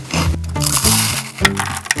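Close, binaurally recorded crunching of a Ritz cracker being chewed beside a dummy-head microphone, with sharp crunches near the middle and end. It plays over background music with a steady bass line.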